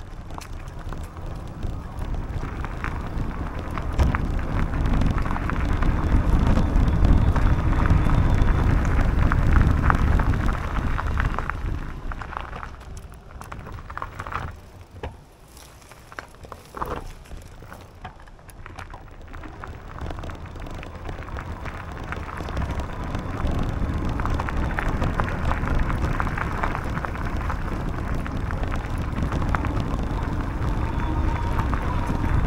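Bicycle tyres rolling over a dirt and gravel track, with wind rushing over the microphone. The noise is loudest in the first third, falls to a quieter stretch with scattered crackles and clicks through the middle, then builds again.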